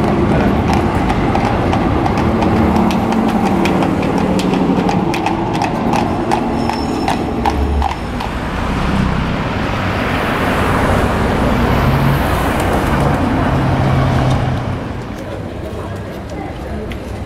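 Horse hooves clip-clopping on the street, a quick uneven run of sharp clicks, with voices around them. About halfway through the hooves give way to a rushing traffic noise with a high whine that rises and falls, as from a passing vehicle.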